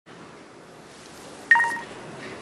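A mobile phone gives one short electronic beep about one and a half seconds in, over faint room tone.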